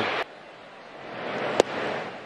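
Ballpark crowd noise that cuts off abruptly just after the start, then quieter stadium ambience. About one and a half seconds in, a single sharp crack of the pitch arriving at the plate is followed by a brief swell of crowd noise.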